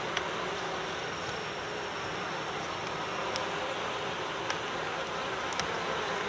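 Steady buzzing of a honeybee colony in an open Layens hive, a continuous hum of many bees.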